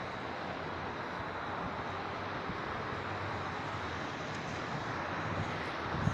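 Steady rushing of road traffic, probably tyres on a wet road, swelling slightly near the end.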